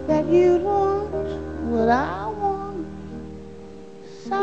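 Female jazz vocalist singing live, with a phrase that swoops upward in pitch about two seconds in over soft sustained accompaniment. The sound fades out near the end.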